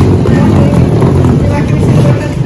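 Steady low rumble of wheels rolling over a tiled floor, with faint voices of people around.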